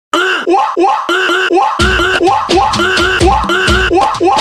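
Vocal beatboxing through cupped hands: a Brazilian funk beat of repeated mouth pulses, about four a second, with a deep bass joining under it just under two seconds in.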